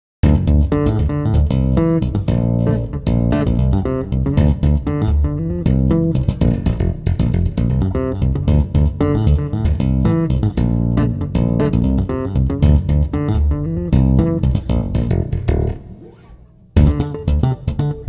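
Chapman Stick played by two-handed tapping: low bass notes under chords and melody on the higher strings, through effects. The playing drops away almost to nothing for about a second near the end, then comes back in at full level.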